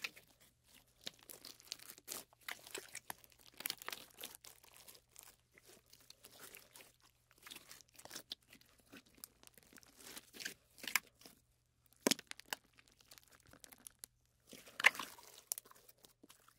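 Hands working slime: irregular sticky crackling and popping, with a few louder crackles in the second half and a louder burst near the end.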